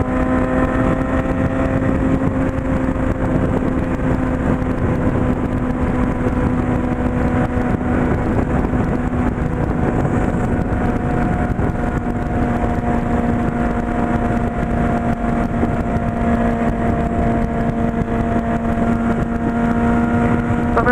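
Honda CB600F Hornet's inline-four engine running at a steady highway cruise, its pitch holding nearly constant, under a constant rush of wind and road noise.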